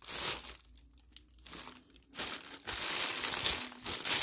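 Thin clear plastic polybag crinkling as it is handled and pulled back from a leather clutch, in several rustling bursts, busiest in the second half.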